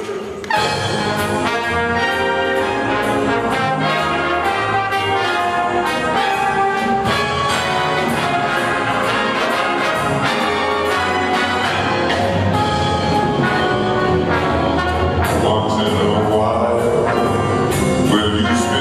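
Jazz big band striking up about half a second in, the brass section to the fore over a steady drum beat.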